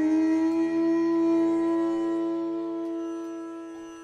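A bamboo bansuri flute made by Alon Treitel holds one long low note with reverb added. The note wavers slightly about a second in, then slowly fades away.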